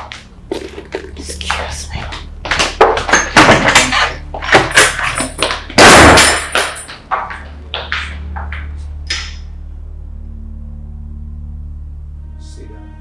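Footsteps and knocks on a hard floor as a person walks off, an irregular run of sharp thuds with one loud bang about six seconds in. A low steady hum takes over from about eight seconds.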